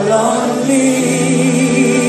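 Live gospel worship song: several voices singing long held notes together over a band with electric guitars and keyboard.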